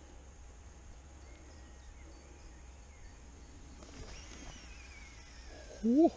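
Quiet open-air lakeside ambience with a low background rumble and faint bird calls, one a thin falling whistle late on. A brief, louder rising call comes right at the end.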